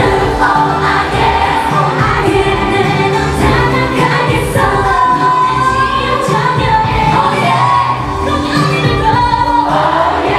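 Live K-pop with female voices singing into handheld microphones over a loud backing track with a steady beat, several singers joining in together.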